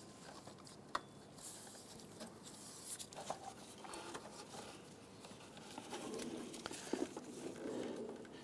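Faint rustling and scraping of a rubber serpentine belt being worked off the engine's pulleys by hand, with a few light clicks, the sharpest about a second in.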